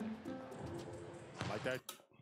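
Quiet soundtrack of basketball game footage: background music and voices, with a short voiced outburst near the end, then a click and the sound cuts off suddenly.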